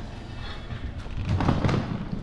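Wheels of a rolling carry-on suitcase rumbling and clattering as it is pulled out of an elevator onto a tiled floor, loudest about a second and a half in.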